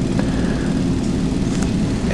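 A steady low hum with a background hiss, even throughout with no change.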